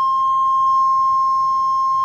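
1985 Buick LeSabre's key-in-ignition warning sounding: one steady, unbroken high tone.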